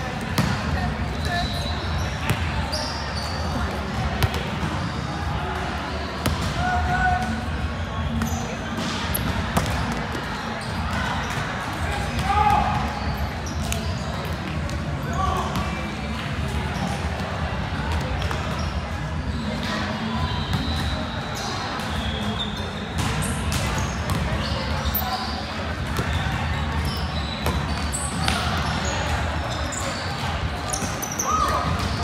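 Volleyballs being struck and bouncing on the floor of a large, echoing gym, with sharp thuds scattered through. Short high squeaks of court shoes on the floor and background voices over a steady low hum of the hall.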